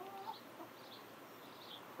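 Faint clucking of backyard hens.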